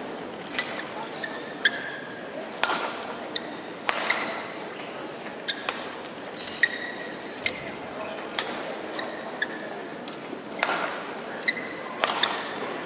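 A badminton rally: the shuttlecock is struck by rackets with sharp cracks every second or so, and shoes squeak in short chirps on the court floor. A steady crowd murmur echoes in a large hall underneath.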